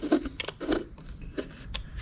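A few light, scattered clicks and taps from hands fitting a cap-delete plate and its small hex screws onto a Honda distributor.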